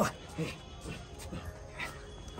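A voice cuts off at the very start, then comes a run of four faint, short dog-like yips about half a second apart over quiet background music.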